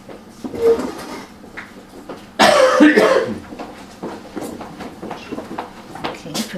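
A person coughing: one loud cough lasting under a second, about two and a half seconds in, after a shorter, softer throat sound near the start.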